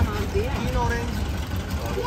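Auto-rickshaw engine running with a steady low hum under passengers' voices.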